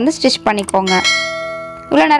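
A single bell-like ding about a second in, a chime of several steady tones that rings on and fades: the notification-bell sound effect of a subscribe-button animation. A voice comes before it.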